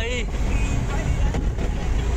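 Steady low rumble of a passenger van's engine and road noise, heard from inside the cabin while it drives.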